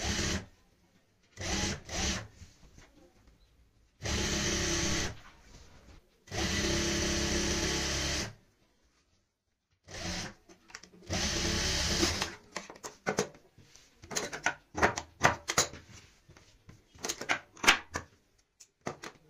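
Industrial sewing machine stitching a seam in six short runs of one to two seconds each, stopping and starting as the fabric is guided through. In the last six seconds, a quick string of sharp clicks and snips as the thread ends are trimmed.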